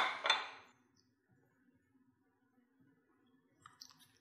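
Near silence with a faint steady room hum after a spoken word trails off; near the end, a few faint clinks as a drinking glass is picked up.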